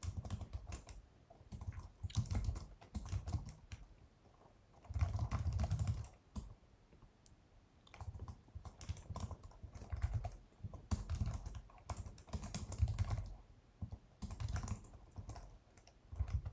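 Typing on a computer keyboard close to the microphone: rapid key clicks with dull desk thuds, in bursts of a second or two with short pauses between.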